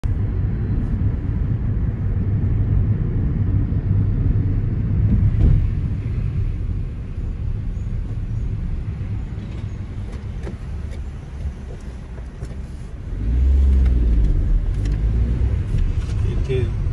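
Car engine and road rumble heard from inside the cabin while driving slowly. Near the end the engine grows louder as the car accelerates.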